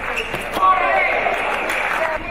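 Table tennis ball being struck and bouncing on the table in the last strokes of a rally, then a loud shout from a player about half a second in as the point is won, over the murmur of the hall.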